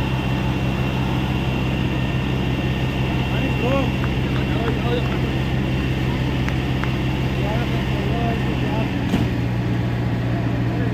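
A steady low engine-like drone with a thin high whine over it, and faint shouting voices of onlookers. The drone changes about nine seconds in, with a sharp click.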